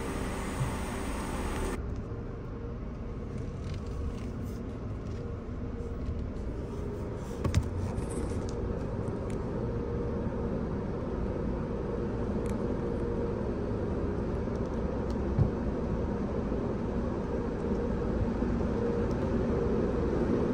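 Steady low rumble of a car idling, heard from inside its cabin, with a few faint clicks and one sharper knock about seven and a half seconds in. The rumble grows slightly louder toward the end.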